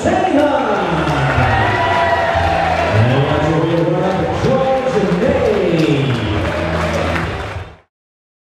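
Arena crowd cheering and shouting with long, sliding calls over music as the winner's arm is raised. It fades out quickly just before the end.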